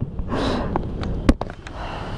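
Plastic bag rustling as it is handled and pushed into a plastic basket, with a sharp click just past halfway.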